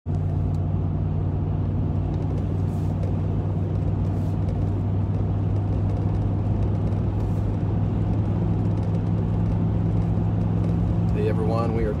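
Steady low drone of engine and road noise inside the cabin of a moving pickup truck.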